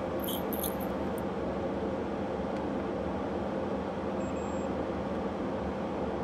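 Steady whooshing airflow of a biosafety cabinet's blower, with a low hum under it. A few faint ticks about half a second in.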